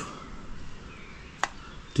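A single sharp click or tap about one and a half seconds in, over a low, steady background.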